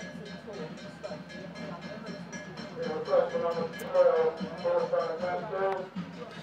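Open-air football match sound, with raised voices calling out on and around the pitch from about halfway through.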